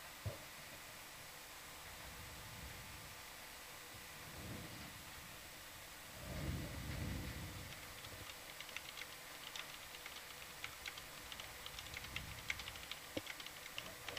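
Computer keyboard typing, faint irregular key clicks through the second half, over the steady hiss of the audio feed, with a brief low rumble just before the typing starts.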